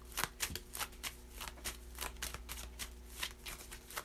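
A tarot deck being shuffled by hand: a quick, even run of card clicks, several a second.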